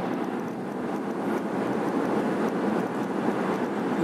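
Steady road and wind noise inside the cabin of a Mahindra XUV500 SUV moving along a smooth highway.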